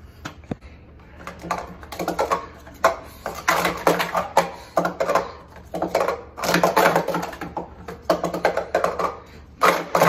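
Plastic sport stacking cups clattering as they are stacked up and brought down at speed on a mat during a full cycle: a dense, fast run of clacks that starts about a second and a half in.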